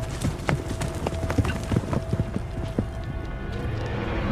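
Horse hooves clopping on hard, dry ground in a string of irregular steps, over a low sustained music drone.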